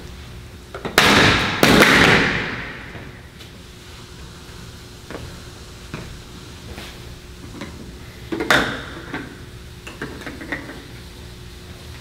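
Small metal cans dropped onto a tiled floor: two loud clattering impacts about a second in that ring and rattle for a second or so, then scattered lighter knocks and another clatter about two-thirds through.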